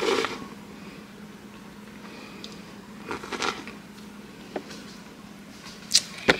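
A sip of hot frothed chai latte from a ceramic mug at the very start, then a quiet room with a faint steady low hum and a few soft handling sounds. A sharp knock near the end.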